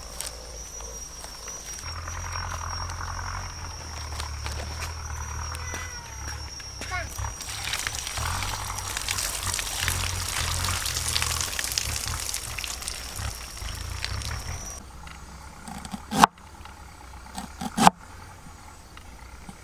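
Outdoor ambience with a steady high-pitched insect drone and rustling of handled leaves; then, in a quieter setting, two sharp knocks of a cleaver chopping on a wooden cutting board, about a second and a half apart, near the end.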